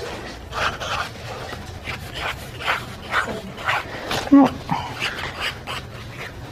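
Felt-tip marker hatching on paper: short scratchy strokes, about two to three a second, as a drawn circle is shaded in.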